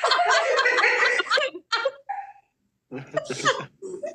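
People talking, with a short pause about halfway through.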